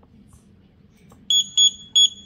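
Touch-feedback buzzer of a DWIN T5L touchscreen display giving three short, high beeps in the second half, each one the response to a tap on its on-screen temperature button.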